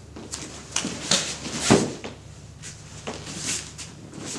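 Cloth rustles and bare-foot shuffles on foam mats as two people in karate uniforms settle back into a facing stance, a handful of short brushing sounds with one louder thump a little before halfway.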